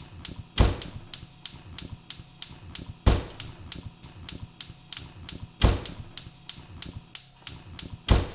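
Gas hob spark igniter clicking in a rapid, evenly spaced rhythm, like a hi-hat pattern. A heavier, deeper thud comes in about every two and a half seconds.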